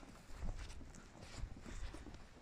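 Wind buffeting the microphone in a low rumble, with irregular soft taps of footsteps on dry grass.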